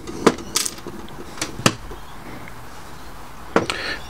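Small metal lock-cylinder parts and pin-tumbler pins being handled and set down on the bench: a few sharp, light clicks in the first two seconds, then a quieter stretch with one faint tap near the end.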